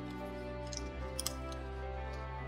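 Soft background music with sustained notes. A few faint ticks come about a second in, from paper being pressed and creased by hand.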